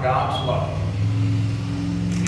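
A man's voice preaching into a microphone, going into a long, steady, low held sound from about half a second in.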